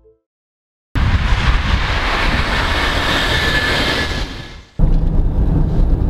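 A loud, even rushing noise that starts suddenly about a second in and fades out after about four seconds. It then cuts abruptly to the steady low rumble of a moving car heard inside its cabin.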